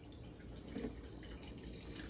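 Rubbing alcohol poured from a plastic bottle into the metal tank of an ultrasonic cleaner, a steady trickle and splash of liquid filling the tank.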